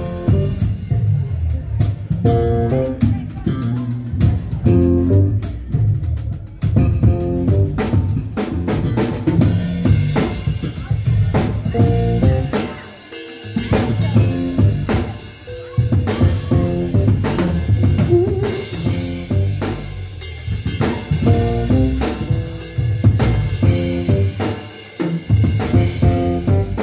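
Live band playing an instrumental groove: drum kit with snare, rimshots and bass drum, electric bass and electronic keyboards, breaking off briefly a few times.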